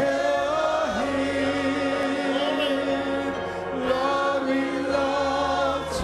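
Worship singing by a group of voices over instrumental accompaniment, a slow song of long held notes.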